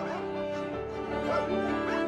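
Several dogs barking and yipping in short calls over sustained background music.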